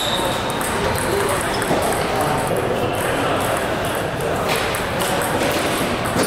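Table tennis ball clicking back and forth between paddles and table in a rally, over steady chatter of many voices in a busy playing hall.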